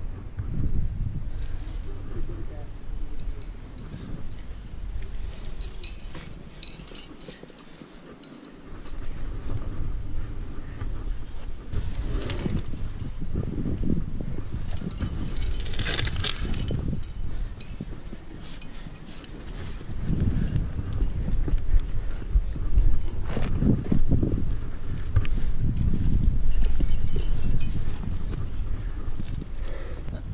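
Climbing gear, carabiners and cams racked on a harness, clinking in scattered light clicks as a climber jams up a granite crack. Under it runs a steady low rumble of wind and rubbing on the head-mounted camera's microphone, which dips briefly about eight seconds in and grows louder in the second half.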